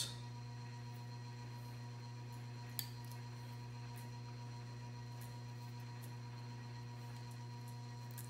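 A steady low hum with fainter steady higher tones above it, and one small click about three seconds in.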